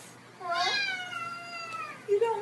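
A domestic cat giving one long meow, starting about half a second in, rising briefly and then drawn out with a slow fall in pitch.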